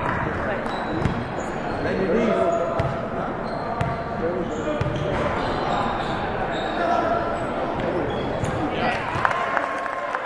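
A basketball bouncing on a hardwood gym floor, a few sharp bounces here and there, under steady talk from players and spectators in the hall.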